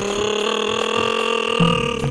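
A long, steady held tone of several pitches sounding together, loud and unchanging for about two seconds, then cutting off.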